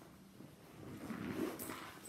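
Faint handling noise of small items and a fabric pouch being rustled and packed, quiet at first and growing louder about halfway through.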